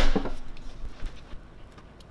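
Manual clamshell heat press clamped shut: a short clunk right at the start that dies away within about half a second, then quiet room noise with a few faint light ticks while the press sits closed.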